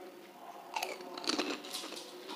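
Crisp, hollow fuchka (pani puri) shells being bitten and chewed: a run of sharp crackly crunches starting a little under a second in.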